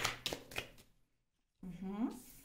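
A deck of oracle cards shuffled by hand: a quick run of crisp papery clicks in the first second, then a moment of dead silence, and a brief bit of a woman's voice near the end.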